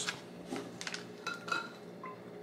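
A person eating a sandwich close to the microphone: faint chewing with a few short clicks and mouth smacks.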